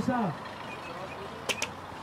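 Steady background hum of road traffic, with two quick sharp clicks about a second and a half in.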